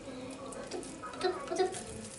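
Hands scooping and squeezing a sticky grated-carrot and crushed-biscuit mixture in a glass bowl, with faint clicks against the glass.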